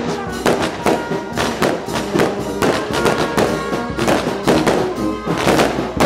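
Brass band playing a march: held brass chords over a steady drum beat, about two beats a second.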